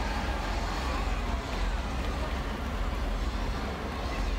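Steady low rumble of passing vehicle engines, with crowd voices mixed in.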